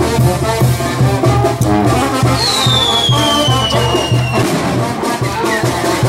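Mexican street brass band playing as it marches, a tuba pumping a steady bass beat under the brass melody. About two seconds in, a high thin whistle slides slowly downward over the music for about two seconds.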